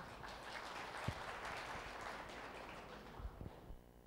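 Audience applause, faint, strongest a second or two in and dying away near the end.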